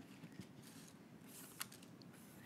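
Near silence with a few faint clicks and rustles from die-cut cardstock pieces being handled on a tabletop, the sharpest click about a second and a half in.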